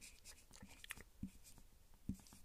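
Whiteboard marker writing on a whiteboard: a run of faint, short scratchy strokes.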